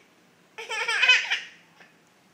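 A baby laughing: one high-pitched run of quick laughs lasting about a second, starting about half a second in.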